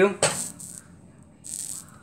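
Two brief scraping hisses, about a quarter second in and again near the end, as food is pushed against a frying pan.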